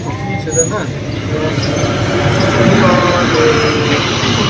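A road vehicle passing, its engine and road noise swelling to a peak about three seconds in and then easing.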